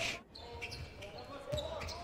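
Faint basketball game broadcast sound: a ball being dribbled on a hardwood court.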